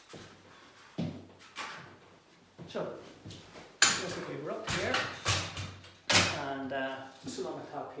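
A few sharp knocks and clatters as decorating gear is handled, the loudest about four seconds in, with a few mumbled words between them.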